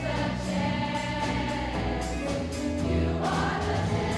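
A choir singing with accompaniment, holding long notes.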